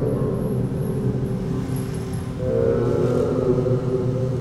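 Slow, sustained music: low held notes over a deep rumble, with a higher chord swelling in a little past halfway.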